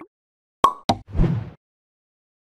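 Short motion-graphics sound effects: two sharp clicks about a third of a second apart, then a brief burst of noise, marking the animated end-card text popping onto the screen.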